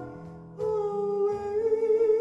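A small live band playing Hawaiian-style music: bass and guitar under a long held sung note that comes in strongly about half a second in.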